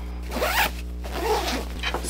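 Zipper on a fabric packing cube being pulled closed around the lid, in two rasping pulls.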